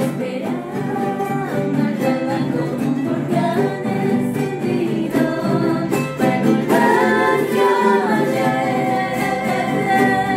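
Several women singing an Andean folk song together, accompanied by strummed charangos and acoustic guitars with a snare drum tapped in time.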